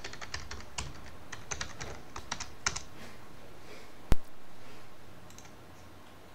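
Computer keyboard being typed on, a quick run of keystrokes over the first three seconds while a password is entered at a login prompt. About four seconds in there is one much louder sharp click, followed by a short fading hum.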